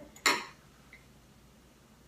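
One short, sharp clink of a ceramic plate being handled on the kitchen countertop.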